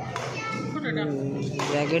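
Young spectators' voices talking and calling out in a large indoor hall, with a sharp racket strike on a badminton shuttlecock just after the start.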